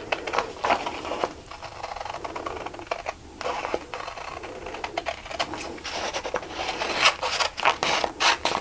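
Scissors snipping through a sheet of sublimation print paper, a run of short cuts with the paper rustling as it is handled; the snips come thicker near the end.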